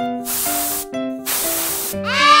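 Bouncy children's cartoon music with a simple melody, over two hissing bursts of air, each under a second long, like a pump inflating a balloon.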